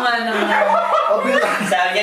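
A small group of people chuckling and laughing among themselves, mixed with voices.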